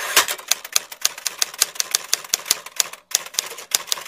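Typewriter sound effect: a fast run of key clicks, several a second, with a short break about three seconds in.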